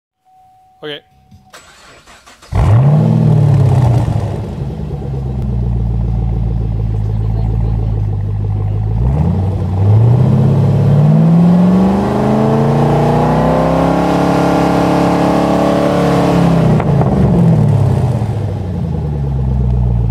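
2011 Camaro SS's 6.2-litre V8 with the mufflers deleted, starting about two and a half seconds in with a quick rev flare and settling to idle. About nine seconds in it is revved up and held at higher revs for several seconds, then drops back to idle, with one short blip near the end.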